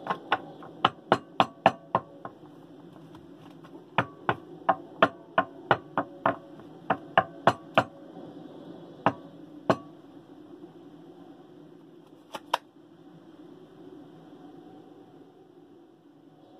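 A deck of tarot cards being shuffled by hand: runs of sharp snapping taps, about three or four a second, broken by pauses, with a last quick pair of taps near the end.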